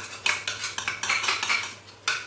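A wooden spoon scrapes repeatedly against a stainless steel pot while chicken is stirred and fried with masala (bhuna). The strokes come quickly, about three a second.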